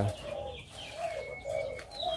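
Zebra doves (perkutut) in an aviary cooing: a series of short, low coo notes one after another, with faint high chirps from other birds.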